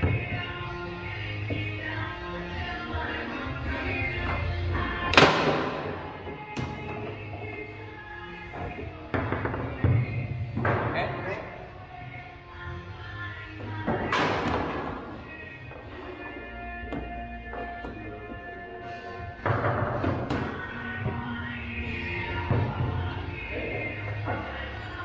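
Background music playing throughout, over the sharp knocks and thuds of a foosball game: the ball struck by the table's figures and knocking against the table. Several knocks, the loudest about five seconds in and about fourteen seconds in.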